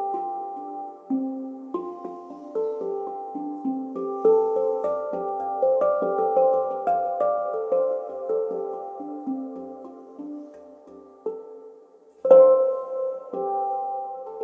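PanArt Hang (steel handpan) played by hand in a flowing improvisation: single struck notes that ring on and overlap. The notes thin out to a short lull about eleven seconds in, then one louder stroke sounds near the end.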